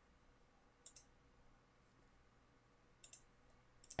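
Near silence, broken by a few faint computer clicks: one about a second in and a short pair about three seconds in.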